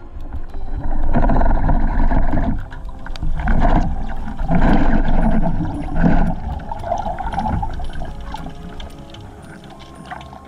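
Muffled underwater rushing and gurgling of water against a camera housing as a diver moves, coming in surges and dying down near the end.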